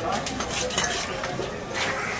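Clinking and clattering in a busy fish market: scattered sharp clicks and metal clinks, with faint voices in the background.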